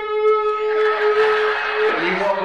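A man's voice holding one steady, slightly falling high tone for about two seconds, imitating a television's after-hours sign-off test tone, then cutting off just before the end.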